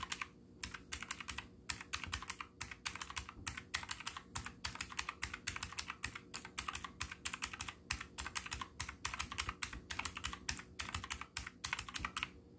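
Round-keyed mechanical-style calculator keys clicking in quick, irregular runs of presses, several a second with brief pauses, as a column of figures is added up.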